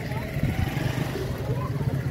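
A motor vehicle engine running steadily in the background, a low hum, with faint voices of people around.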